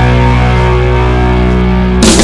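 Rock background music: a distorted electric guitar chord held and ringing out, its brightness fading as it sustains.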